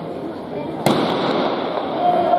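A starter's pistol fires once, a sharp crack a little under a second in, over steady crowd chatter in a large indoor hall; the chatter grows louder after the shot.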